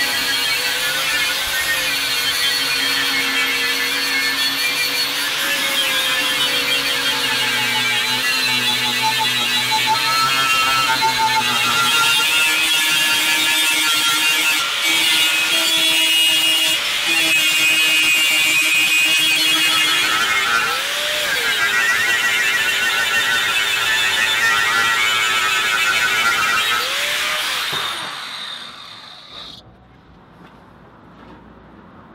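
Angle grinder with an abrasive disc grinding rust off a steel plough disc. The motor's pitch wavers as the disc is pressed to the metal. The sound fades out near the end.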